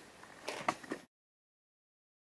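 A few faint clicks and rustles of a sneaker being handled, then the sound cuts off abruptly to dead silence about a second in.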